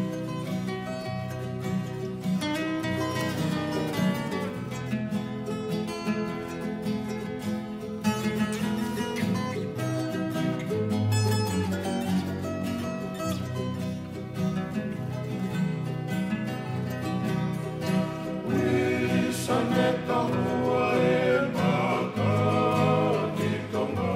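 Tongan kava-club string band music: strummed and plucked acoustic guitars playing a steady accompaniment, with voices starting to sing near the end.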